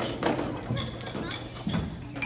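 Children talking among themselves in a large hall, with a few knocks and thumps from them moving about.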